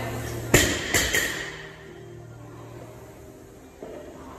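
Loaded barbell with bumper plates dropped from overhead onto rubber gym flooring: a loud bang about half a second in, then two smaller bounces just after. Background music plays throughout.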